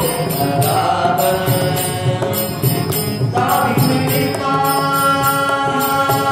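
Tamil devotional bhajan: a man sings with harmonium accompaniment while a mridangam keeps the rhythm with regular strokes. Near the end the harmonium holds steady notes under the voice.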